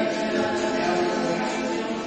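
A small mixed group of men and women singing a worship song together in unison, holding long notes, with ukuleles strummed underneath.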